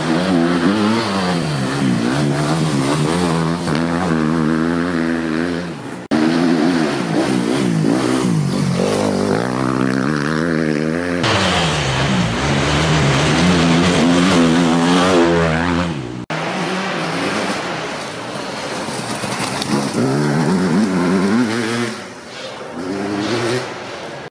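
Enduro motorcycles revving hard as they ride a dirt forest track, the engine pitch climbing and dropping with throttle and gear changes. The sound jumps abruptly several times where separate passes are cut together.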